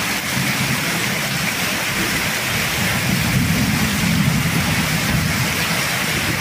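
Heavy rain pouring steadily in a windy downpour, with a low rumble running underneath.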